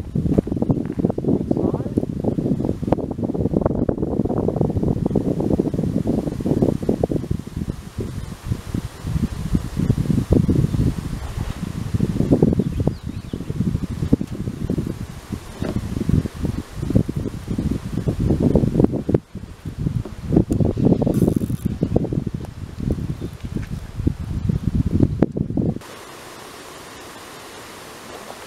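Wind gusting on the camera microphone, a loud uneven low rumble. About two seconds before the end it cuts off suddenly, leaving only a steady faint hiss.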